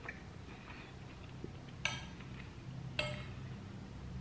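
Two light clinks of a metal fork against a plate, about two seconds and three seconds in, each with a brief ring.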